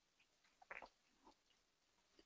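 Near silence with a few faint, short clicks, the clearest a little under a second in.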